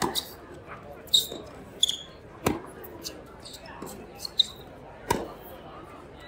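Tennis ball struck back and forth in a rally on a hard court: sharp racket hits about every two and a half seconds, with ball bounces and short high sneaker squeaks between them.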